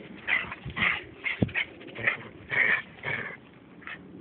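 A small dog whimpering in short, repeated cries, about two a second.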